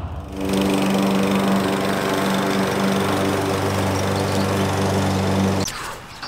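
Walk-behind petrol lawn mower engine running steadily while mowing grass, cutting off shortly before the end.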